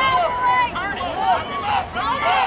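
Several voices shouting and cheering at once from the sideline during a youth football play, with high-pitched yells that rise and fall and overlap one another.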